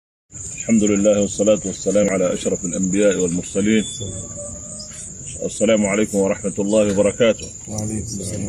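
A man speaking in two stretches, over a continuous high-pitched chirping of crickets that carries on through the pause between them.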